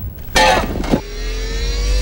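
Film battle-scene sound effects: a short burst about a third of a second in, then a mechanical drone rising slowly and steadily in pitch.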